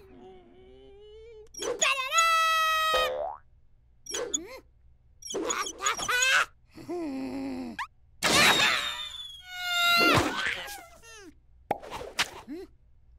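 Cartoon chick character's squeaky, wordless vocal sounds in a string of short bursts that bend up and down in pitch, mixed with springy cartoon boing effects as he bounces on a diving board.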